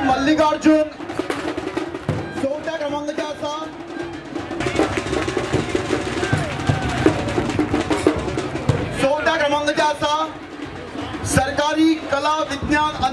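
A man's voice speaking over a PA, broken in the middle by a few seconds of drum-led music, a rapid drum roll with percussion, before the speech resumes.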